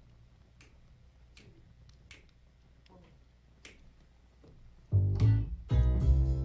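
Quiet finger snaps, about one every three-quarters of a second, counting off a slow swing tempo. About five seconds in, a small jazz band comes in loudly with piano and upright bass.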